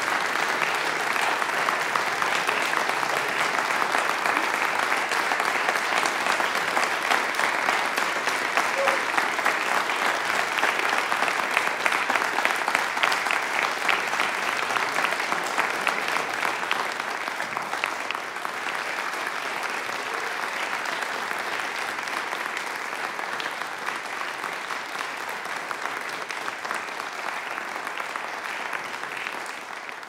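Concert audience applauding, with steady dense clapping that eases a little past the middle and fades out at the very end.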